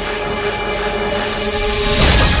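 Electronic cartoon sound effect of a magic hair helmet powering up: a steady hum that swells into a rising whoosh near the end, mixed with electronic music.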